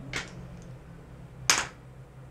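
A single sharp plastic click about one and a half seconds in as a makeup compact is handled, with a short soft swish near the start.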